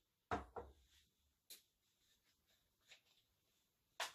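Mostly near silence, with a light knock about a third of a second in, a smaller one just after, and a sharp little click about a second and a half in, as cocktail things are handled on a countertop.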